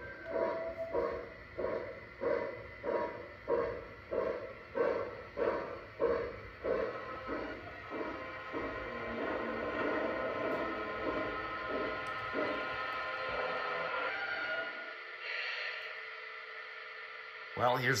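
Onboard sound system of a Lionel model of a Pennsylvania Railroad L1 steam locomotive playing steam exhaust chuffs, about two a second, as the model runs. The chuffing stops after about seven seconds and gives way to a steadier sound with a short hiss near the end as the locomotive comes to a stand.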